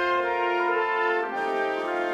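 Concert band brass section holding sustained chords, moving to a new chord about two-thirds of the way through, with no bass underneath.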